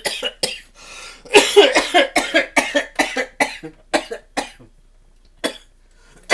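A man in a fit of coughing and laughing: a few coughs, then a quick string of short laughing, coughing bursts about three a second that trail off, with one last cough near the end.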